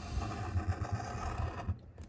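A metal scratcher coin scraping the coating off a paper scratch-off lottery ticket, a steady rough scraping that dies away about one and a half seconds in.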